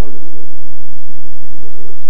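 A drawn-out voice sound from the preacher or congregation, with a short sliding cry at the start and a wavering held tone near the end, over the steady hiss of a loud, heavily compressed sermon recording.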